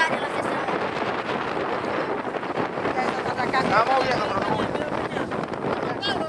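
Wind buffeting the microphone as a steady rushing noise, with voices talking over it about three and a half seconds in.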